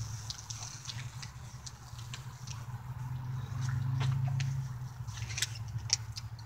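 A person gulping water straight down from a plastic bottle with her head tipped back: a steady low swallowing sound that grows louder partway through, with scattered light clicks.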